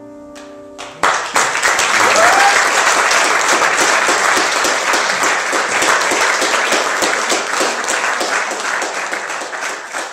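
A grand piano's final chord ringing out, cut off about a second in by an audience breaking into loud applause, which carries on steadily and starts to thin near the end.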